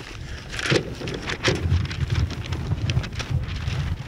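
Wind buffeting the microphone in gusts, with a few brief rustles about half a second to one and a half seconds in.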